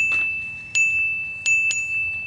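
A high, bell-like metallic ring at one steady pitch, struck four times: at the start, about three-quarters of a second in, and twice close together near the end, each strike ringing on.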